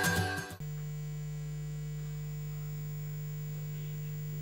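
Music that cuts off abruptly about half a second in, giving way to a steady electrical mains hum.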